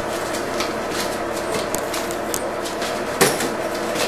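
Homemade foam-padded PVC-pipe nunchucks being swung, with scattered light taps and one louder knock about three seconds in, over a steady background hum.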